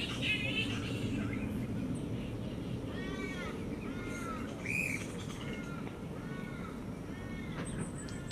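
Grey-headed flying foxes calling at their roost: short, harsh squawks that rise and fall in pitch, repeating about twice a second from about three seconds in, over steady low background noise.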